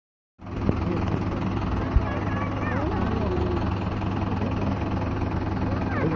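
Fire engine's engine running steadily at idle, a low even hum, under the murmur of crowd voices. Sharp knocks land about half a second in and at two seconds in.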